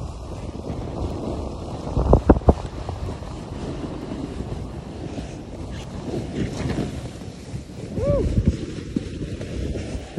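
Wind rushing over the microphone of a camera carried down a ski run at speed, with snowboards sliding and scraping over the snow. There are a few louder bumps about two seconds in and again near eight seconds.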